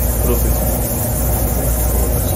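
Watch-servicing workshop machinery running: a loud, steady hiss over a low hum, with a faint voice underneath.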